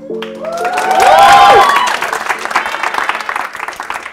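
Studio audience applauding, with whoops of cheering rising and falling over the clapping about a second in, the loudest moment. Background music fades out at the start.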